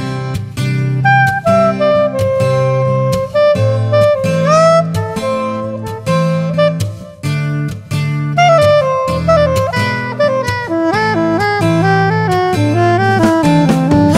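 Instrumental break of a song: a saxophone plays a melodic solo over bass and a steady drum beat.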